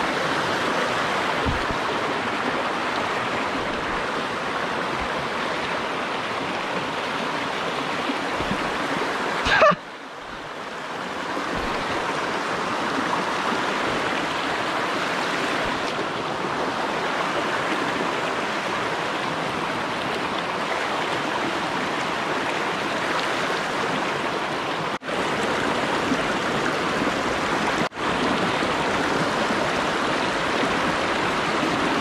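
Shallow rocky creek running fast over stones and small cascades: a steady rush of water, with one brief louder burst about ten seconds in.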